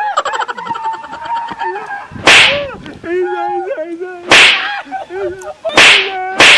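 Three loud, sharp whip-crack sound effects, about two seconds apart. Between them a man's voice wails and cries out.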